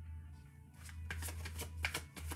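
A tarot deck being shuffled by hand: a quick run of crisp card slaps and flutters that starts about three-quarters of a second in, over quiet background music.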